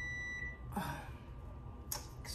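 A steady, high-pitched electronic alarm tone that cuts off about half a second in, followed by two brief soft noises.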